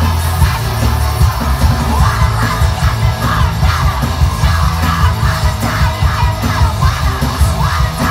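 Live punk band playing loud, with distorted guitars, bass and drums under a female singer yelling and singing; her voice comes up strongly about two seconds in. The mix is bass-heavy.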